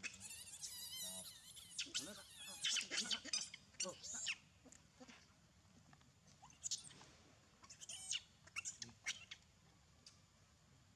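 Young macaque screaming in shrill, wavering cries of distress while being pinned down by another monkey. The cries come in bursts for the first four seconds or so, then as shorter squeals around seven, eight and nine seconds in.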